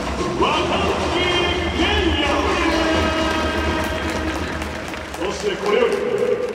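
Stadium public-address announcer calling out a player's name in long, drawn-out tones over music, echoing through the domed ballpark above a steady crowd rumble.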